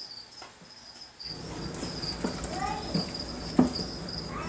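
Crickets chirping in a steady high trill, joined about a second in by the rumble and knocks of a plastic storage tub being handled and pulled from its shelf rack. The loudest knock comes near the end.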